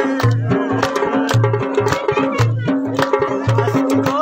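Live Khowar folk music: drums beat a steady repeating rhythm, with a low stroke about once a second and quicker lighter strokes between, while a singer's voice and a held melody line sound over them.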